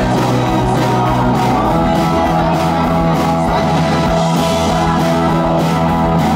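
Rock band playing live through a PA: electric guitars over bass guitar and a drum kit, steady and loud, with the bass moving to a new note about two seconds in.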